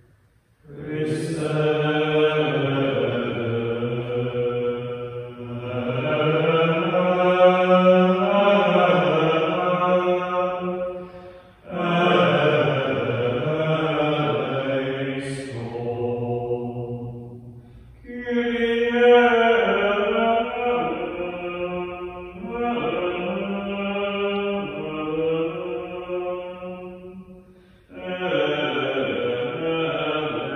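Men's voices singing a slow Catholic liturgical chant of the Mass, in long sustained phrases with short breaks for breath between them.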